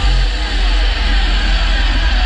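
Loud hardstyle dance music from a live DJ set over a large concert sound system, with very heavy deep bass, recorded from within the crowd.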